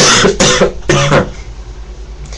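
A boy with a cold coughing, a few coughs in quick succession in about the first second.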